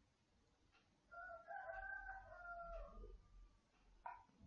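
Near silence, with a faint, long pitched call in the background lasting about two seconds, starting about a second in.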